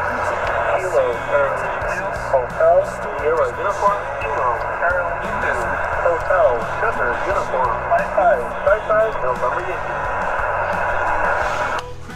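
HF amateur radio receiver's speaker playing a weak single-sideband voice reply buried in steady band static, the voice faint and garbled inside the hiss. Near the end the voice drops away, leaving only the static.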